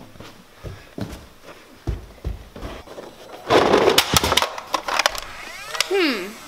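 Knocks and thuds of a large cardboard box being handled on carpeted stairs, with a louder scraping rush about three and a half seconds in and a few sharp clicks near the end.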